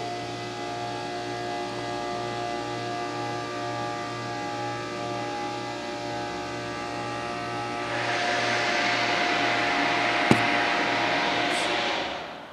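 Otis Series 5 hydraulic elevator's machinery running while the cab travels: a steady hum with several fixed tones. About eight seconds in a louder hiss joins it, a single sharp click comes a couple of seconds later, and the sound falls away at the end as the ride finishes.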